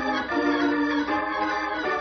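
Organ music bridge between scenes of a radio drama: sustained organ chords that change a few times.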